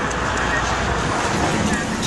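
Steady street traffic noise: the low rumble of a motor vehicle running close by, with road hiss.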